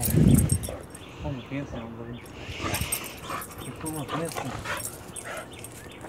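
Excited pit bull whimpering and whining in greeting, with soft voices alongside. A loud low thump comes right at the start.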